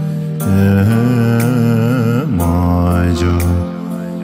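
Male voice singing a slow, chant-like Bhutanese Dzongkha prayer song (choeyang), with gliding ornaments, over a studio backing of a low sustained drone and a percussion strike about once a second.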